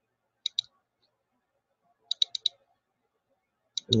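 Computer mouse clicking: a pair of clicks about half a second in, a quick run of four clicks a little after two seconds, and one more near the end.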